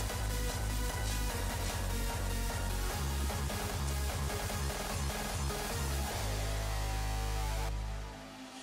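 Electronic dance music with a pulsing bass beat. In the last two seconds the bass holds one long note, and the music cuts off at the end.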